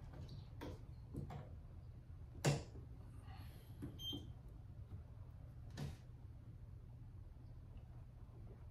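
A tennis racquet being set onto a swingweight machine: a few sharp knocks and clicks of the frame against the machine, the loudest about two and a half seconds in, and a short electronic beep about four seconds in as the measurement is started. A steady low hum runs underneath.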